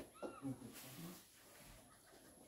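A single short high-pitched call about a quarter second in, its pitch rising and then falling, heard over faint low murmuring in the room.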